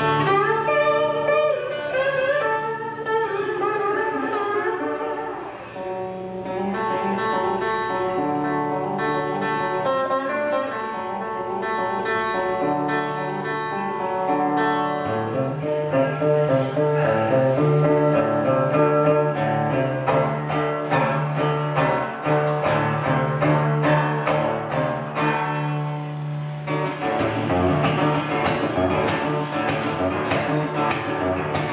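Metal-bodied resonator guitar played fingerstyle in a blues instrumental. Notes waver in pitch in the opening seconds, and a steady bass line and busier picking come in about halfway.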